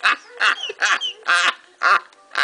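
A man laughing hard in short breathy bursts, about two a second, without words.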